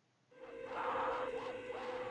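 Eerie film-score music starting suddenly about a third of a second in, after silence: one held note with wavering voices sliding up and down over it.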